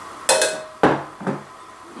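A glass pitcher set down on a kitchen counter among other glassware: three short knocks and clinks, the first with a brief glassy ring.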